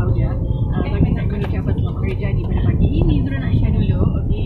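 Steady low road and engine rumble heard inside a moving car's cabin, with indistinct voices talking over it.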